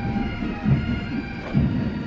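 Military pipe band playing: bagpipes sounding over their steady drones, with a drum beat about once a second.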